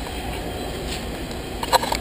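Steady low mechanical rumble, with a quick cluster of knocks and bumps near the end as a body and camera brush against the rim of the shuttle's side hatch during a feet-first climb through it.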